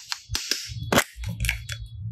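A red plastic cap being worked off a small yellow plastic clay container, giving several sharp plastic clicks and snaps. The loudest snap comes about a second in, with rubbing and handling noise between the clicks.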